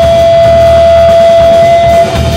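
Live rock band with an electric guitar holding one long sustained note over bass and drums, played very loud.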